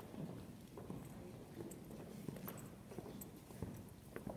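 Faint, irregular footsteps and light knocks of shoes on a hardwood gym floor, over low room noise.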